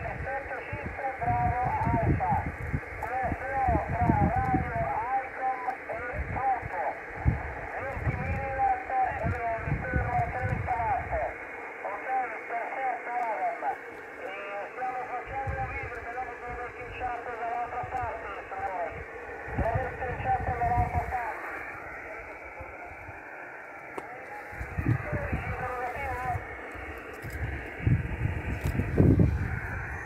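The other station's voice, received on the 23 cm (1296 MHz) band by an ADALM-Pluto SDR and played through the laptop: thin, band-limited radio speech over a steady noise floor, giving its reply in the contest contact. Gusts of wind rumble on the microphone on and off.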